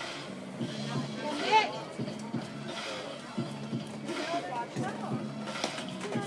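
Spectator chatter with background music, and one loud shout about a second and a half in. Near the end comes a single sharp crack of a bat hitting the pitched ball.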